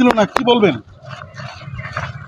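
A woman speaking briefly, her voice stopping under a second in, followed by the low background hubbub of people.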